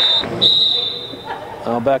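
A referee's whistle blown twice, a short blast and then a longer steady one just under a second, signalling the end of a rally.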